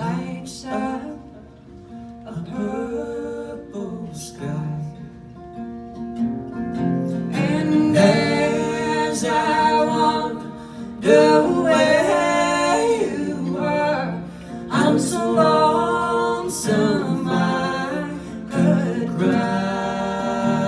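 A woman singing a slow country ballad over strummed and picked acoustic guitar. Her voice swells louder from about seven seconds in.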